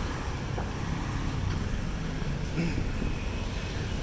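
Street traffic passing, a steady low rumble of vehicle engines and tyres.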